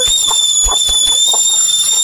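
Kettle whistling at the boil: one steady, high-pitched whistle that holds its pitch.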